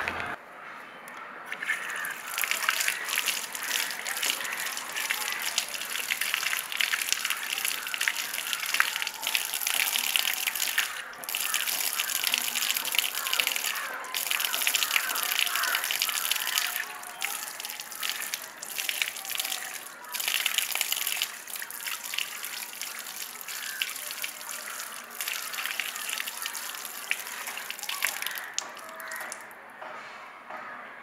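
Water gushing from an open outdoor tap and splashing onto cupped hands and a tiled basin as a man washes his hands and face. The splash rises and falls as his hands move in and out of the stream, with a few brief lulls.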